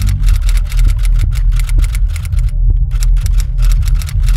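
Manual typewriter keys striking in a rapid run of clicks, about six or seven a second, with a short pause just after the middle before typing resumes. A steady low rumbling drone runs underneath.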